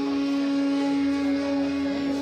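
Steady Indian classical drone holding the tonic with the fifth above it, with faint melodic lines over it, at the opening of a bansuri and tabla performance of raga Marwa.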